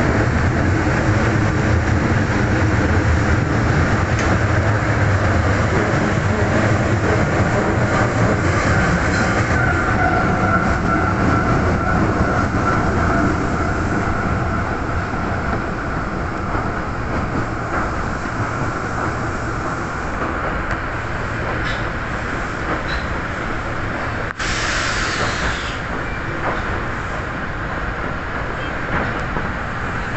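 Osaka Metro subway train running through a tunnel, heard from inside the front car: a steady rumble of wheels on rail that eases slightly about halfway through. About 24 seconds in, a short burst of hiss starts suddenly and fades.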